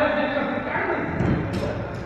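A man's voice talking in fragments that are hard to make out.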